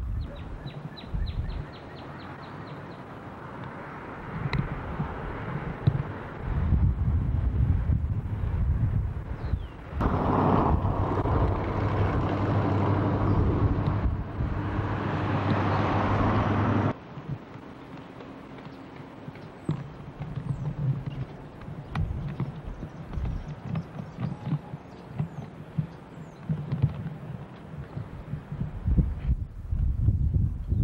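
Wind gusting against a camcorder's microphone, with uneven low rumbling buffets. From about ten seconds in, a louder, steadier hum with a low tone takes over for about seven seconds and then cuts off suddenly.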